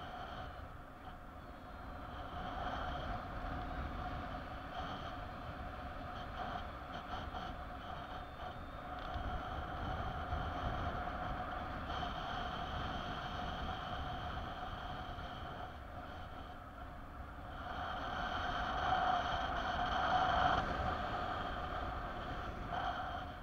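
Wind rushing over the camera microphone in paraglider flight, a steady low rumble with a continuous high tone that swells for a few seconds near the end.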